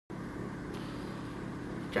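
Steady background hum with a soft hiss: room tone.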